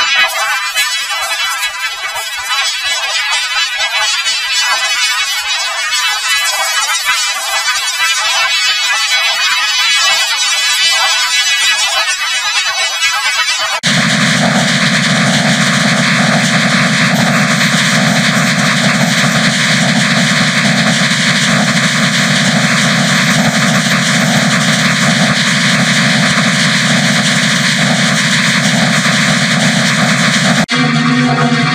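Heavily effect-processed, distorted electronic music. For the first half it is a thin, hissy, high-pitched texture with no bass. About halfway in it switches abruptly to a dense, steady, harsh buzzing drone.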